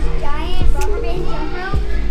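Children's voices chattering and calling out, with a background music track underneath.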